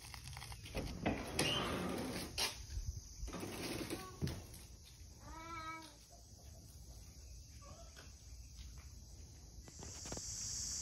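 Restroom door handle and latch clicking and knocking as the metal door is worked open, with handling rustle. About five and a half seconds in there is a short warbling squeak.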